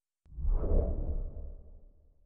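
A whoosh transition sound effect with a deep rumble. It starts about a quarter second in, swells quickly, and fades away over about two seconds.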